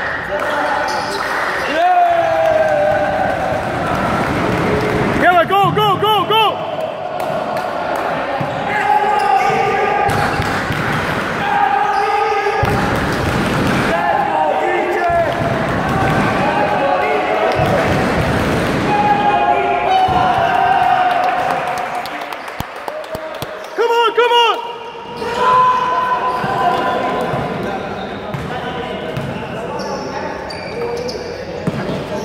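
Basketball game sounds in a gym: the ball bouncing on the court and sneakers squeaking in two quick clusters of rising and falling squeals, about five seconds in and again later, under continual shouting voices.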